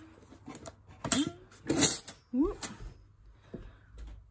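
A wooden canteen-of-cutlery case being handled and opened: a few sharp clicks and knocks from its catches and lid, the loudest about two seconds in.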